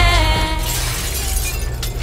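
Backing music slides down in pitch and dies out, as if slowing to a stop. Then comes crashing and breaking as objects are flung down, with a few sharp knocks in the second half.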